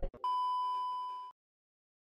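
A single electronic beep sound effect: one steady high tone lasting about a second, fading gently and then cut off abruptly.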